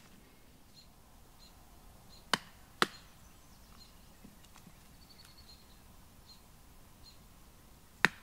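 Two sharp wooden knocks about half a second apart, a little over two seconds in, from working fatwood splinters on a chopping stump; otherwise quiet forest ambience.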